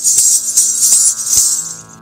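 Brass ghungroo ankle bells jingling, with a few sharp strikes a fraction of a second apart as the feet step. The jingling fades out near the end as a steady drone of held notes comes in.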